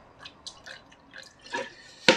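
Mirin poured from a bottle into a bowl: small, irregular drips and trickles, a little louder about one and a half seconds in.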